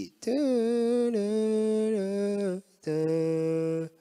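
A man humming two held notes. The first starts with a slight scoop, then holds, stepping down a little partway through. After a short gap comes a shorter, lower note. He is sounding out the song's key.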